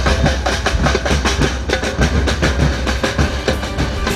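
Fast, dense drumming on large bass drums and hand drums, many strokes a second over a steady low boom, in the style of a rally drum group.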